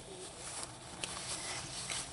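Faint rustling of a paper tissue being handled, with a few light ticks, growing slightly louder.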